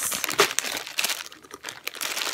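Clear plastic zip bags of jade chip beads crinkling as they are handled, busiest in the first second and then dying down, with a sharp click near the end.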